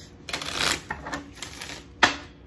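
A deck of reading cards being shuffled by hand: a dense rush of cards sliding against each other about half a second in, then a run of quick light card flicks.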